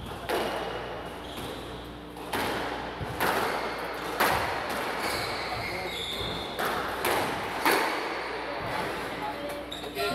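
Squash rally: the ball is struck by the rackets and hits the walls, a sharp crack about once a second with a short echo in the hall.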